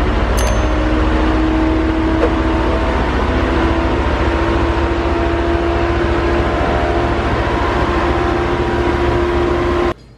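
Mercedes-AMG C63 S coupe's twin-turbo V8 idling with a steady, deep rumble as the car rolls slowly back out of a garage.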